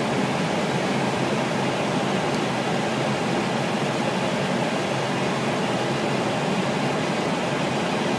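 Steady, even cockpit noise of an Airbus airliner's flight deck on short final approach, around 400 to 500 feet: a constant rush of airflow and ventilation with the engines at approach power, with no distinct events.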